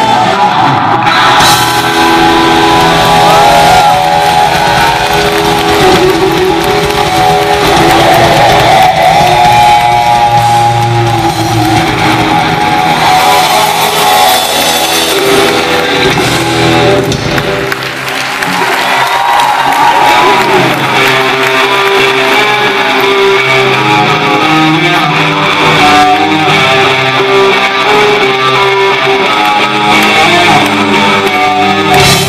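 Live rock music led by a loud electric guitar played on a single-cutaway gold-top guitar, with the band behind it.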